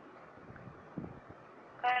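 Low steady background hiss with a brief faint low sound about a second in; near the end a woman's voice begins reading an Arabic syllable aloud.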